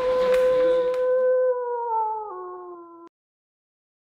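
A wolf howl as a sound effect: one long call that holds a steady pitch, steps down in pitch a little after two seconds in, and cuts off suddenly about three seconds in. Some background noise fades out during the first second.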